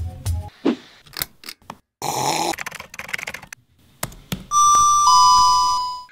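A two-note doorbell-style "ding-dong" chime, a higher tone stepping down to a lower one, held for about a second and a half near the end. It is the loudest sound here. Before it come scattered clicks and a short burst of hiss.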